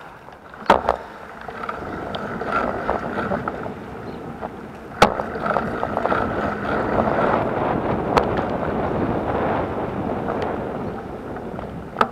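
Riding noise picked up by a bicycle-mounted camera: a steady rush of wind and tyres on asphalt that swells in the middle, broken by three sharp knocks, one near the start, one in the middle and one later.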